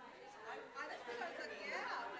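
Many people talking at once in a room, overlapping conversations from several tables in group discussion, with no single voice standing out.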